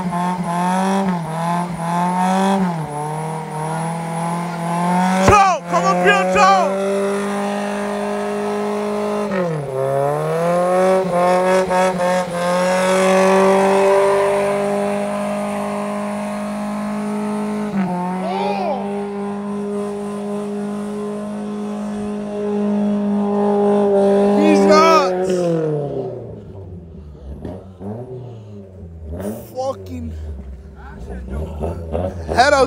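Lifted Toyota's engine held at high revs during a burnout, with the tyres spinning and squealing. The revs dip briefly a few times, then about 25 seconds in the engine drops off and winds down to a low idle.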